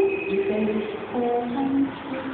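A woman singing an Ainu traditional folk song into a microphone, in short held notes that step up and down in pitch, with a brief break about halfway through.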